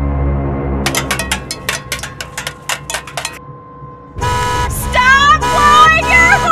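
Low, dark soundtrack rumble, then a rapid run of about a dozen sharp hits for two or three seconds and a short lull. About four seconds in, a loud vehicle horn starts blaring steadily, with a voice shouting over it.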